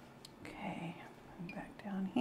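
A woman's voice murmuring a few quiet, unclear words under her breath, with a faint click just before.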